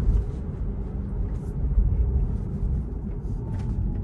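Low, steady rumble of road and tyre noise inside a Tesla's cabin as the car drives up a ramp and slows down.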